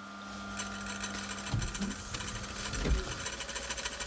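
Small ice-smoothing machine running as a cartoon sound effect: a steady hum, then from about a second and a half in a low rumble with a fast, even mechanical clatter.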